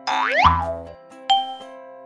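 Cartoon sound effects over children's background music: a springy boing that rises and then falls in pitch, with a low thud about half a second in, then a short bright ding a little past one second in.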